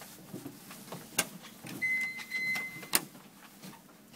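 Elevator car-panel push buttons clicking, with a high, steady electronic beep about a second long, broken once briefly, between a sharp click about a second in and another sharp click near the three-second mark.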